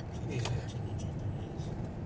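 Steady low engine and road rumble heard inside a Volkswagen car's cabin while it is driven around a roundabout.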